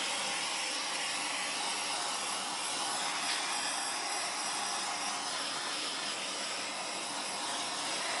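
Handheld torch flame hissing steadily as it is passed over wet acrylic paint to pop surface bubbles.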